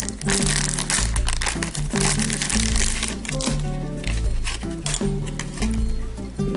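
Foil blind bag crinkling as it is opened by hand, over background music with a steady bass line.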